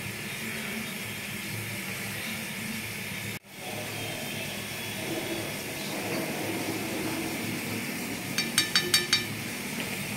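Prawn curry with ghee simmering in a pan, giving a steady hiss that drops out for an instant about a third of the way in. Near the end a metal spatula clicks against the pan about six times in quick succession.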